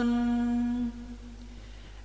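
A voice chanting Vietnamese verse in the ngâm style holds one long steady note at the end of a line, which ends about a second in, followed by a short pause.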